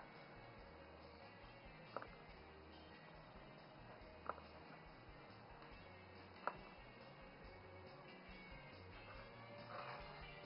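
Near silence with faint background music, broken by three light clicks about two seconds apart: a plastic cake server touching the aluminium cake pan as it cuts a piece from the cake.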